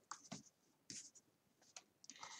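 Faint, brief rustles and scrapes of hands gathering loose wool strands on a tabletop, in three or four short bursts.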